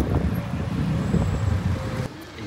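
Steady low rumble of road and wind noise while riding in the open back of an electric sightseeing buggy, with no engine sound, and a single sharp knock right at the start.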